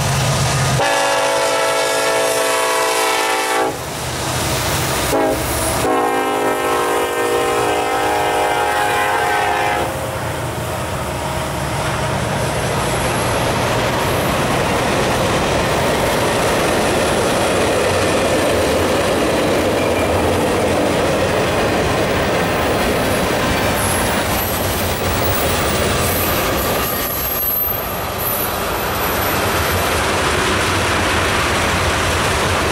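Norfolk Southern freight train led by an EMD SD70ACe locomotive passing close by. Its horn sounds a long blast, a short toot and another long blast in the first ten seconds. Then the heavy rumble of the locomotives gives way to freight cars rolling by with a steady clickety-clack of wheels over the rail.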